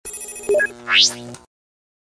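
Electronic logo sting: a rapid, ringing trill of several high tones for about half a second, then a rising whoosh that sweeps up in pitch and fades out about a second and a half in.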